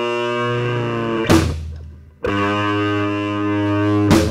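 Garage punk band recording: a held, ringing electric guitar chord, cut by a sharp hit about a second in that dies away almost to silence, then a fresh chord struck and held from about two seconds in.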